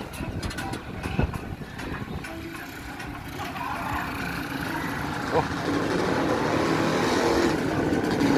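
Motorcycle riding along a city street, its motor running under a steady road noise, growing louder toward the end.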